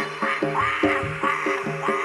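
Live Javanese gamelan music accompanying a jaranan/barongan dance. Ringing pitched percussion is struck at a steady pulse of about two to three notes a second, with a sliding melodic line above it.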